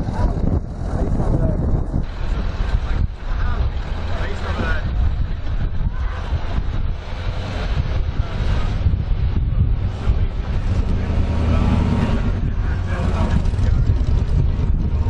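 Wind buffeting the microphone in a steady low rumble, over a vehicle engine running and people talking in the background.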